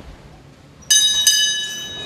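A small brass bell on a wall bracket is rung by its cord, as a church sacristy bell is: two quick strikes about a second in, then clear high ringing that fades away.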